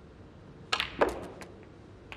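Snooker cue tip striking the cue ball and the balls clicking together: a quick run of sharp clicks about two-thirds of a second in, the loudest about a second in, then a couple of fainter knocks.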